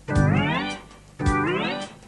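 Live band music: two sharp drum hits about a second apart, each followed by a tone that slides upward for about half a second and fades.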